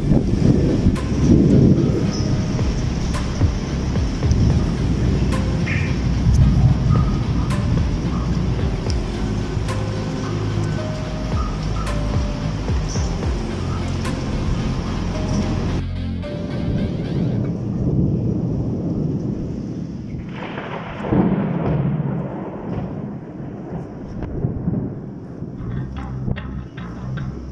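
Low rumbling thunderstorm noise, with music playing over it. The rumble drops off suddenly about sixteen seconds in and swells loudly again around twenty-one seconds.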